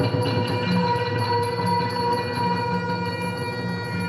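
Cambodian pinpeat ensemble music for classical dance: long held tones over a steady beat of small strikes, about three a second.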